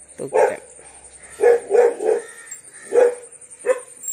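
A dog barking, about six short barks at uneven intervals.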